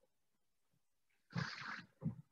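A man's short, noisy breath lasting about half a second, a little over a second in, against near silence.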